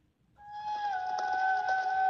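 Film-trailer music coming from a TV in the room: a single held note comes in about half a second in, dips slightly in pitch, and carries on over a faint backing texture.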